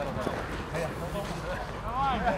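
Distant voices of footballers calling during play, over a low steady rumble; a louder shout begins near the end.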